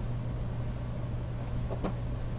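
A steady low hum with faint hiss behind it, and a faint click about one and a half seconds in.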